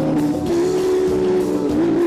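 Live Tejano band music: button accordion, bass and drums playing together, with one note held steady for about a second in the middle.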